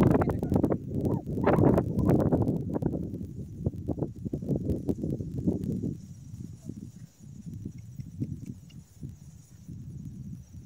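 A horse moving about on grass: irregular hoof steps and rustling, loudest in the first few seconds and fading after about six seconds as it moves away.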